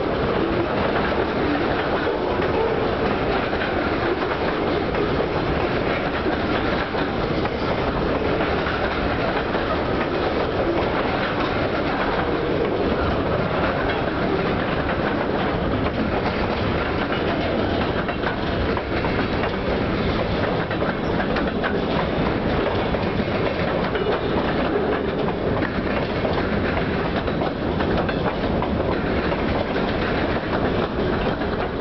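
Freight cars rolling past at close range: their steel wheels running on the rails in a steady, unbroken noise.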